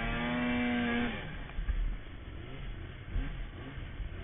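Snowmobile engine running at high, steady revs. About a second in the throttle is released and the engine drops to a much quieter low rumble, with a couple of low thumps as the sled rides over the snow.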